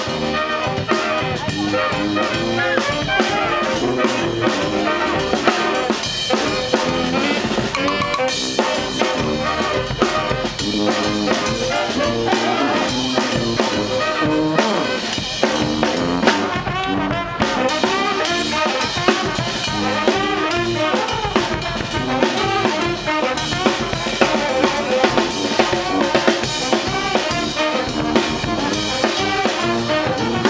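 Live brass band playing: trumpets, saxophones and a sousaphone over snare drum and bass drum, with a steady beat.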